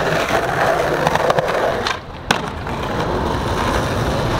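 Skateboard wheels rolling on smooth concrete. About two seconds in comes a click, a brief lull while the board is off the ground, and then a sharp clack as it lands a frontside 180, after which it rolls on.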